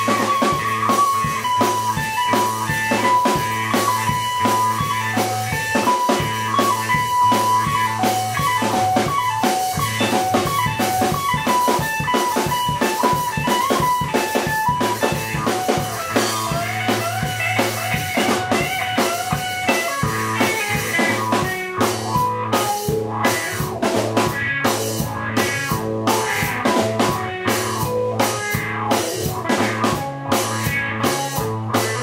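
Live electric blues instrumental in Mississippi juke-joint style: a solid-body electric guitar plays lead lines over a drum kit. The guitar opens on a held, wavering note, then works down in runs and bent, held notes. Near the end the drums come forward with sharper, heavier hits.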